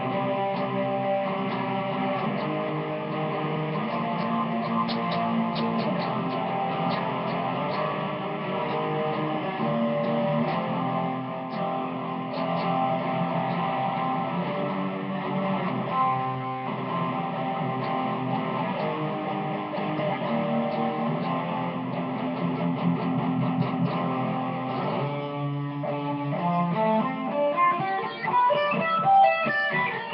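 Guitar being played, with held chords and single notes ringing on. Near the end it slides upward into a quick run of single notes.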